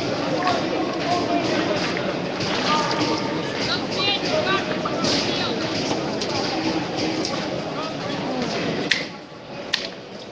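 Crowd of many people talking and calling out at once, a dense babble of overlapping voices. It drops away about nine seconds in, with a single sharp click just before the end.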